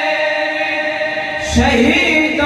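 A man's voice singing a naat, holding one long note and then starting a new phrase about a second and a half in.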